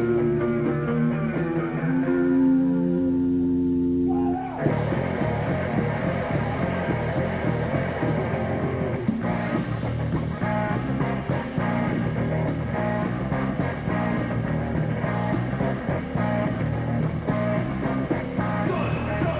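Punk band playing live on a 1984 cassette demo: an electric guitar chord rings out for about four seconds, then the full band with drums and bass comes in at a fast pace, with no vocals.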